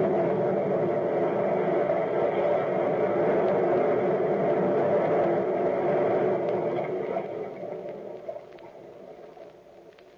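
Scene-change bridge: a sustained, droning musical chord that holds steady, then fades out over the last few seconds.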